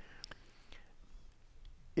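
A pause in speech: quiet room tone with a few faint clicks near the start.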